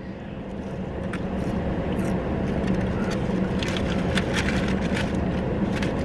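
Steady low rumble of a motor vehicle heard from inside a car cabin, swelling over the first couple of seconds and then holding. Faint crinkling of a paper food wrapper is also heard.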